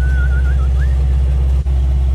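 Generator engine running steadily with a loud low hum. A thin, wavering whistle sounds over it for about the first second.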